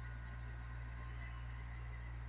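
Steady low hum with an even background hiss, unchanging throughout; no distinct chewing or other events stand out.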